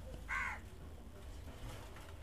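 A single brief bird call, faint, about a quarter of a second in, over a steady low hum.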